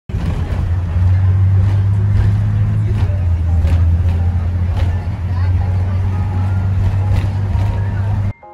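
Engine and road noise heard from inside a moving vehicle: a loud steady low drone with light rattles and knocks about once a second.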